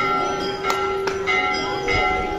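Temple bells being struck by devotees: about four strikes in two seconds, their metallic tones overlapping and ringing on.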